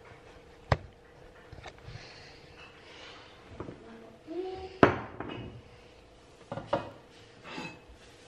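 Kitchenware being handled and set down on a countertop: a handful of sharp knocks and clinks of glass and crockery, the loudest about five seconds in.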